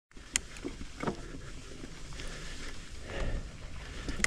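Mountain bike on Hunt Enduro Wide 27.5-inch wheels rolling over a dirt trail: a steady low tyre rumble with wind on the mic, and sharp knocks and rattles from the bike over bumps, one near the start and another about a second in.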